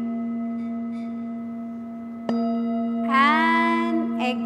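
A hand-held Tibetan metal singing bowl rings with a steady hum and several overtones, slowly fading. It is struck again with a padded mallet a little over two seconds in, and the ring swells back up. Near the end a wavering tone bends upward and then holds over the ring.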